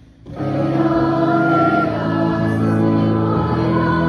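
A school choir singing a Swahili-language choral piece. The choir comes in loud and full about a third of a second in, after a quiet moment, and holds sustained chords.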